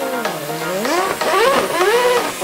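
Electronic intro music with a racing-car engine sound effect revving. Its pitch dips, then climbs and drops back several times in quick succession, like a race car shifting up through the gears.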